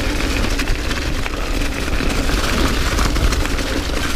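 Mountain bike riding fast down a leaf-covered dirt trail: tyres crunching over dry leaves and the bike rattling, with a steady low rumble of wind buffeting the mic.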